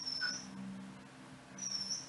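Two faint, thin, high-pitched chirps, one at the start and one near the end, over a low steady hum.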